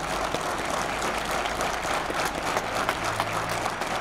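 Steady applause from a crowd of soldiers, many hands clapping at once.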